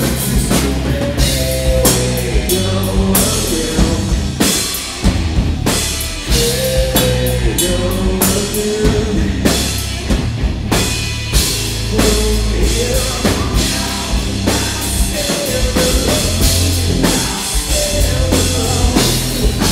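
Live heavy rock band playing loud, with a driving drum kit, bass and distorted electric guitars, and a singer's voice carrying the melody in phrases.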